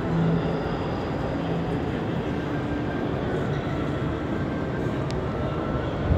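Steady background noise of a large railway station concourse, with the rumble of trains and faint held tones in it.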